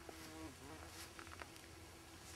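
Faint buzz of a flying insect: a steady hum that grows fuller and wavers in pitch in the first half second. A few soft clicks follow.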